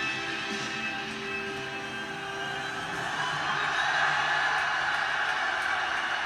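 Music and a cheering arena crowd playing through a television's speakers, with long held notes early on and the cheering swelling from about halfway through.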